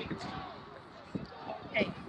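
Men's voices calling out outdoors, with shouts of "hey, hey" near the end, and a couple of dull thumps about a second in.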